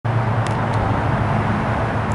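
Steady low rumble of road traffic, with two faint ticks within the first second.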